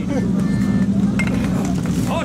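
A steady low engine drone, like a car idling, under scattered voices and crowd noise.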